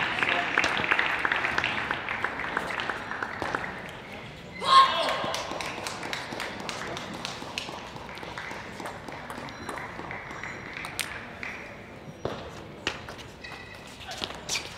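Table tennis hall: scattered clapping fades over the first few seconds, a loud brief shout comes at about five seconds, then the sharp clicks of a celluloid ball on bats and table sound through a rally.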